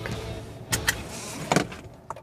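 A few short clicks and knocks inside a car cabin, over a low steady background.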